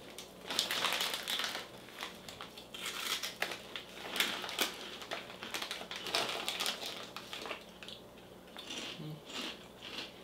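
Crinkling of a pork rind snack bag as it is handled and reached into, in irregular bursts that thin out over the last few seconds.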